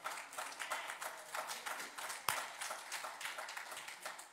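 Congregation clapping, a quick irregular patter of many hands, with one sharp knock a little past halfway.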